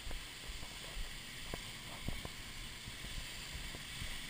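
Steady rush of Minnehaha Falls close by, with a few short knocks of footsteps on the rocky gravel path behind the falls.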